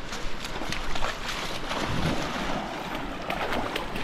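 Water splashing and swishing around the legs of people wading through a river.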